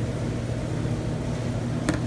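Steady low mechanical hum of kitchen air handling or a ventilation fan, with one short sharp click near the end.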